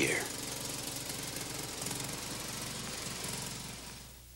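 Small riding lawn tractor engine running steadily, fading out near the end.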